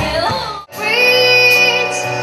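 A child sings pop with a live band behind, and the music cuts off abruptly about two-thirds of a second in. Another child singer then holds one long note over the band's accompaniment.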